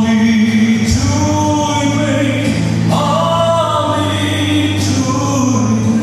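A man singing a slow gospel song into a microphone while strumming an acoustic guitar. He holds long sung notes, and a new chord is strummed about every two seconds.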